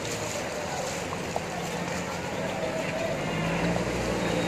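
Diesel engine of a JCB backhoe loader driving through floodwater, its low hum growing louder in the last second or so, over a steady outdoor background with people's voices.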